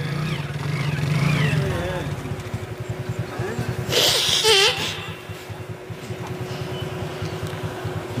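A man weeping into a public-address microphone: low, pulsing, choked sobs, with a short wavering cry about four seconds in.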